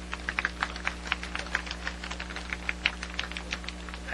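Light, scattered applause from a small crowd: single hand claps, irregular, several a second.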